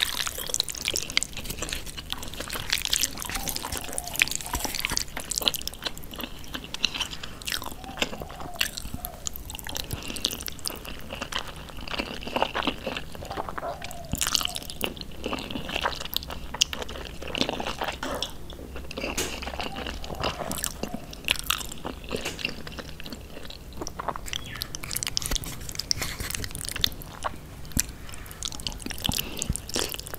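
Close-miked eating of thick jajangmyeon noodles in black bean sauce: chewing and mouth sounds in a dense run of short clicks.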